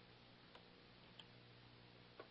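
Near silence: faint steady room hum with two faint short clicks, about half a second and a little over a second in.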